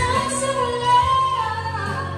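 A woman singing into a handheld microphone over a backing track, holding one note briefly about a second in.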